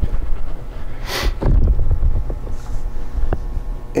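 A man sniffing once, close to the microphone, about a second in, over a continuous low rumble and a few faint clicks.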